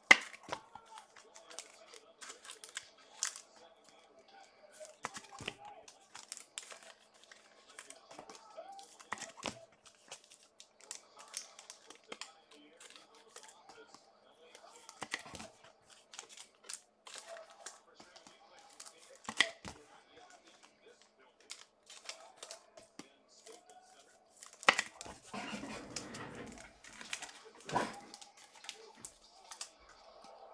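Trading cards and their plastic and foil wrappers being handled, crinkling and rustling, with scattered light clicks and a busier stretch of handling near the end.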